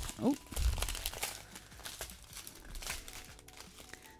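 Clear plastic bags of diamond-painting resin drills crinkling and rustling as they are handled.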